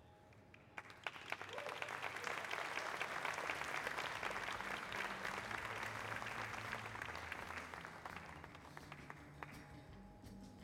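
Audience applause that starts about a second in, is at its fullest in the middle and fades away toward the end.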